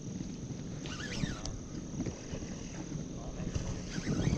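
Wind rumbling on the microphone, with a faint steady high-pitched whine through it and a short call about a second in.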